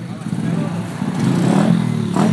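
Small 110cc single-cylinder pit bike engine running at low revs, rising a little in the second half.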